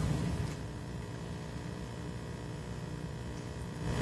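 Room tone in a lecture hall: a steady low electrical hum with a faint hiss, picked up through the sound system, with no distinct events.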